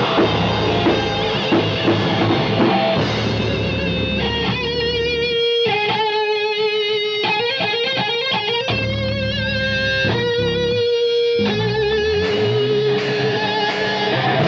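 Live heavy metal band playing, with an electric guitar carrying held, wavering lead notes through the middle while the drums and bass drop out for stretches. The full band comes back in near the end.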